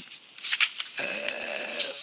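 A man's drawn-out hesitation sound, "uh", held steady for about a second starting halfway through, heard over a video-call headset microphone.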